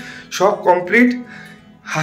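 A man's voice speaking over background music with a steady held note.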